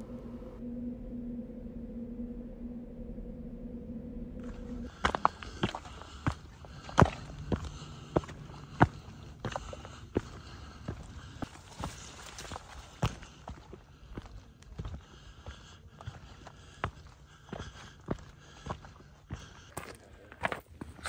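A hiker's boot footsteps on a rocky, gravelly trail: irregular crunches and scuffs that start about five seconds in. Before them there is a steady low hum.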